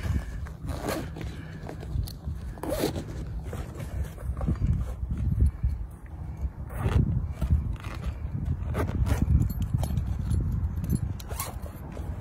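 Zipper on a nylon stand-up paddleboard carry bag being pulled closed in a series of short runs, with rustling of the bag as it is handled.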